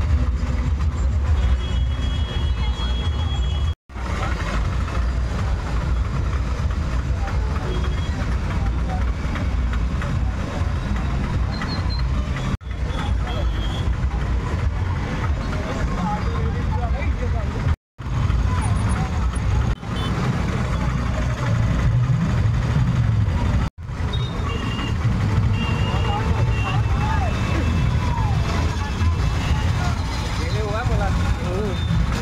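Busy street traffic: auto-rickshaw engines running and passing close by, with a crowd's voices mixed in and a few short horn beeps. The sound drops out briefly four times where the recording is cut.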